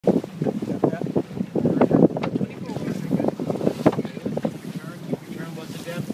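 Wind buffeting the microphone in a sailboat's cockpit, heard as irregular low thumps and rustles over a steady low hum.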